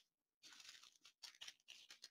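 Near silence with faint crinkling of small plastic bags of diamond-painting drills being handled.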